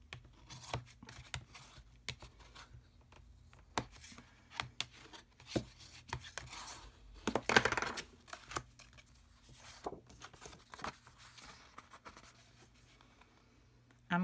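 Folded white cardstock card bases being handled: slid, shuffled and set down, with light taps and paper rustles. The loudest rustle comes about halfway through as a sheet is flipped over.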